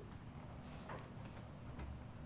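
Hands massaging a bare foot and calf: faint rubbing of palms on skin with a few light clicks, over a steady low room hum.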